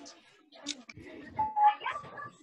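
Indistinct voices and background noise coming through several open microphones on a video call, with a brief steady bell-like tone about one and a half seconds in.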